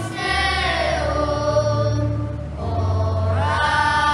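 A choir singing a slow sacred song over instrumental accompaniment, with long held notes and a sustained bass line that changes pitch a few times.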